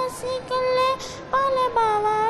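A young girl singing a Punjabi song solo and unaccompanied, holding long notes with a short break about a second in.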